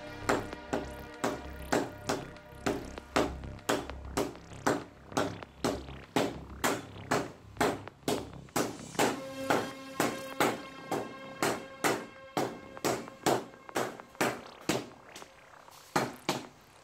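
Three sledgehammers striking in turn on a red-hot Thai dhaab sword blade on the anvil during hand forging, making a fast, steady rhythm of about two to three ringing metal clangs a second. The blows grow softer near the end.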